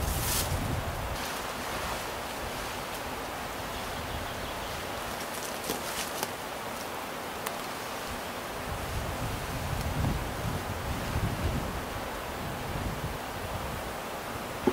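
Wind in a spruce forest, a steady hiss with a few faint clicks and soft low bumps in the second half.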